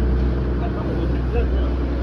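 A fishing boat's engine running steadily underway, a constant low drone. Faint voices come through over it.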